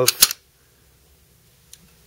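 A couple of sharp clicks at the very start, then near silence: room tone.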